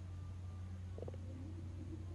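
A steady low hum, with a brief faint pitched sound about a second in and faint wavering tones after it.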